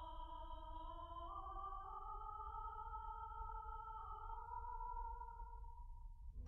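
Opera orchestra playing a soft, sustained chord whose held notes shift slowly, after a louder passage has died away; the chord stops just before the end.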